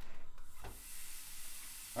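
Raw minced lamb lands in a hot non-stick frying pan with a thud about half a second in, then starts to sizzle with a steady hiss.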